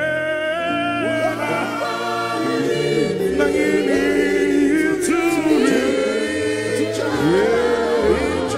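Gospel worship music: several voices singing together over long held keyboard chords from a Yamaha Montage synthesizer.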